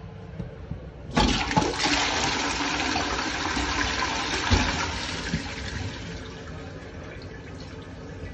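Caroma dual-flush cistern and pan flushing. A sudden rush of water starts about a second in, stays loud for a few seconds, then slowly tapers off as the flush ends.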